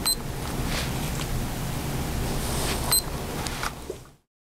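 Advance Pro glucometer beeping as its up-arrow button is pressed to toggle through stored readings: two short, high-pitched electronic beeps, one at the start and one about three seconds in. A steady low background rumble runs underneath.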